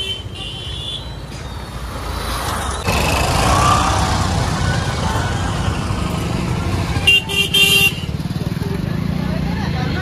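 Busy road traffic, engines and motorbikes running past in a steady low rumble that grows louder about three seconds in, with a vehicle horn honking briefly near the seven-second mark.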